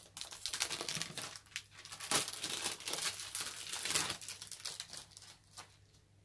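Clear plastic shrink-wrap being peeled and crinkled off a CD jewel case: a dense, irregular crackling rustle that stops shortly before the end.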